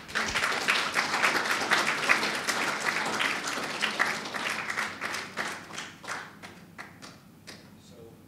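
Audience applauding. Dense clapping starts just after the beginning, thins to a few scattered claps about six seconds in, and then dies away.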